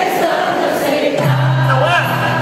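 A Brazilian pop-rock band playing live with several voices singing, recorded from the audience in a large hall. A bass note comes in a little over a second in.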